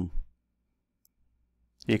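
A voice speaking briefly, then a gap of near silence with a single faint click about a second in, before the voice resumes near the end.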